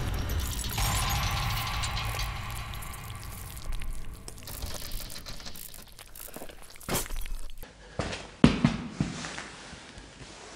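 Intro sound design: a dense low rumble with a hiss above it that slowly fades, with a few sharp clicks. Near the end it cuts to faint rustling and a couple of sharp knocks.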